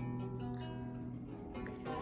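Acoustic guitar being plucked, several notes ringing on together, heard faintly at a distance.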